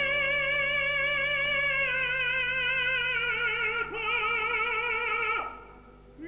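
Operatic tenor singing sustained high notes with a wide vibrato: one long held note, a brief break about four seconds in, then a slightly lower note that falls away shortly before the end.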